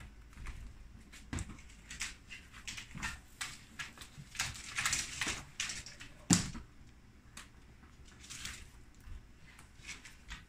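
Iguana claws clicking and scraping on a hardwood floor as the lizards walk about, with one louder knock a little after six seconds in.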